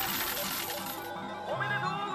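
A pachinko machine paying out in a jackpot ('fever'): a cascade of metal balls clattering for about a second. It is an anime sound effect over background music.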